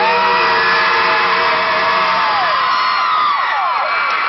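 Male vocal group singing a cappella, holding a long chord that slides down and breaks off about three seconds in, over a crowd cheering and whooping.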